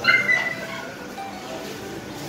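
A dog's short, high-pitched yelp right at the start, lasting about half a second, over faint background music.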